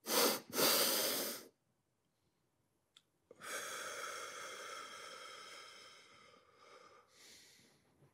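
A man doing physiological-sigh breathing, a technique for calming down: two quick in-breaths through the nose, one stacked on the other, then a breath-hold of about two seconds in silence. Then comes one long out-breath of about three seconds that fades away.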